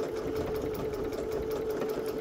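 Electric sewing machine stitching at a steady speed, its motor running with the rapid, even tapping of the needle, as a diagonal seam is sewn across a corner square of quilt patchwork.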